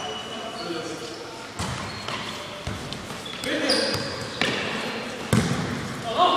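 A futsal ball being kicked and bouncing on a hard indoor court, a few sharp thuds spread across the few seconds, each echoing in the large hall.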